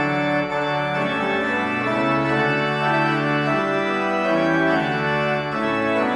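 Church organ playing a hymn, with chords of held notes changing about once a second.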